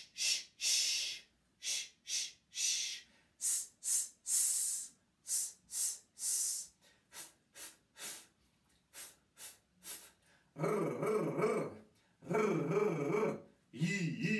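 A man's voice making forceful "shh" hisses from the belly in a breathing warm-up, in a repeated pattern of two short hisses and one long one, then a run of quicker short ones. Near the end come two longer voiced sounds that bend in pitch.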